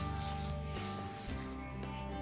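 A whiteboard eraser rubbed across a whiteboard in a few scrubbing strokes that stop a little past halfway. Soft background music plays underneath.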